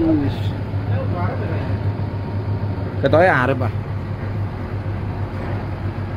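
Bus diesel engine running at low speed, heard from inside the cabin as a steady low hum while the bus moves slowly. Brief voices over it, and a loud, wavering drawn-out call from a person about three seconds in.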